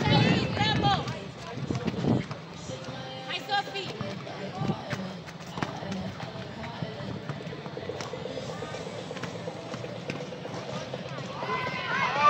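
Youth basketball game on an outdoor court: high-pitched shouts from the players near the start and a few seconds in, with running footsteps and a few scattered sharp knocks of the ball bouncing, over background music.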